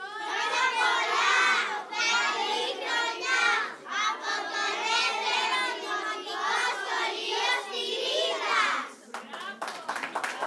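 A group of children singing together in unison, loud phrases with short breaks between them. They stop near the end and hand clapping begins.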